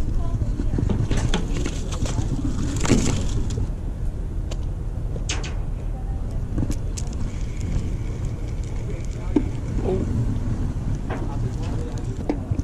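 Outdoor ambience on a crowded fishing pier: a steady low rumble with indistinct chatter of other anglers and scattered short clicks.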